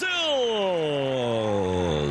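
A sports commentator's long drawn-out goal cry: one held shout that slides steadily down in pitch for about two seconds, celebrating a goal.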